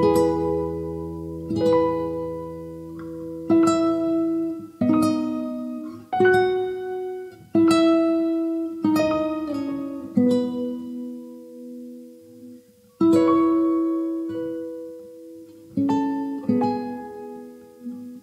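Instrumental backing track for a hymn, with no singing: a slow melody of single plucked notes on a guitar-like string instrument, each note ringing out and fading before the next.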